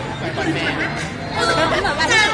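People talking, with crowd chatter in the background.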